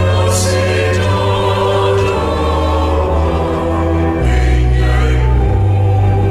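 Ghanaian gospel song: a choir singing in Twi over sustained bass notes. The bass steps down to a lower note about four seconds in, then back up near the end.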